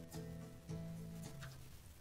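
Faint music from a Korg Pa-series arranger keyboard playing back an accompaniment style on several MIDI channels at once: sustained chords with light drum hits, fading out near the end.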